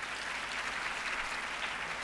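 Audience applauding: a steady patter of many hands clapping, fairly quiet.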